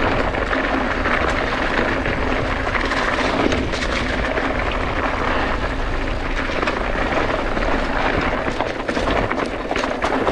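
Mountain bike rolling fast downhill over loose rock and gravel: steady tyre noise on the rough trail, peppered with many small clicks and rattles from stones and the bike, over a continuous low wind rumble on the microphone.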